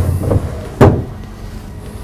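A wooden wardrobe drawer being slid and pushed shut, with one sharp knock a little under a second in.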